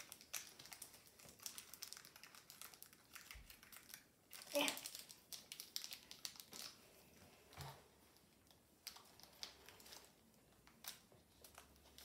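Faint, irregular crinkling of a Pokémon booster pack's foil wrapper being handled and opened by hand.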